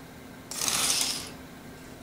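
Adventure Force remote-control crawling cobra toy giving one electronic hiss about half a second in, lasting under a second, over a faint steady hum.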